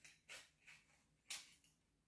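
Mostly near silence, with faint handling noises from a lightweight adjustable walking stick: a few soft rubs and one small sharp click a little past halfway.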